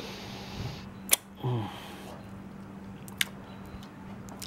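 A person sucking on a freshly cut, bleeding finger: a sharp mouth smack about a second in, a brief low 'mm' just after, and another smack near the end, over a faint steady hum.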